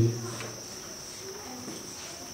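A pause in speech in which only a faint, steady high-pitched hum remains over low room noise.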